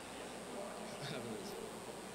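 Steady background noise of a large event hall between speakers, with a few faint distant voices.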